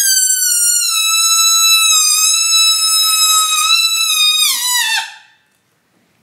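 Air let slowly out of a rubber balloon through its stretched neck, making a loud, high-pitched squeal that holds a nearly steady pitch, then slides lower as the balloon empties and stops about five seconds in.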